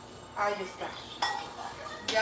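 Dishes and utensils clinking at a kitchen counter, with one sharp, ringing clink a little over a second in.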